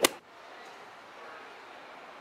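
A single sharp crack right at the start, then faint room tone.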